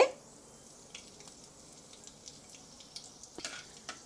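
Hot oil in a kadhai sizzling faintly during a tempering of cumin and fenugreek seeds, with a few small pops from the seeds crackling.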